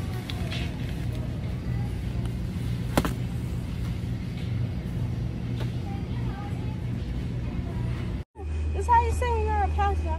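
Steady low hum of a supermarket's background noise, with one sharp knock about three seconds in. After an abrupt cut near the end, a steady low drone with melodic music over it.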